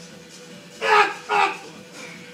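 Two short, loud shouts from a man's voice, each falling in pitch, about a second in, as a heavy barbell back squat is driven up out of the bottom, over steady background music.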